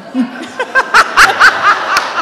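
A woman laughing close to a microphone: a quick run of short, rhythmic bursts of laughter starting about half a second in.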